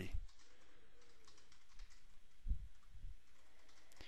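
Faint clicking and tapping from a computer keyboard and mouse over a quiet room hiss, with a couple of soft low thumps about two and a half seconds in.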